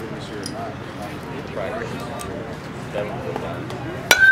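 Indistinct voices of spectators and players chattering in the background, with no single sound standing out.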